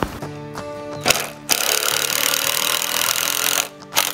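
Power drill running in two bursts: a short run, then a longer run of about two seconds that stops shortly before the end.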